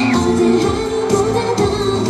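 K-pop girl-group song with singing, played loud over a stage sound system at a steady beat.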